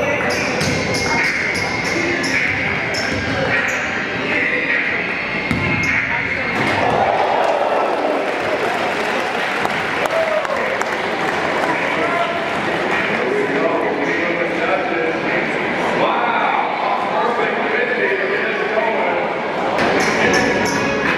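Basketball bouncing on a hardwood gym floor, several sharp bounces in the first few seconds, over the steady chatter of a crowd in the gym.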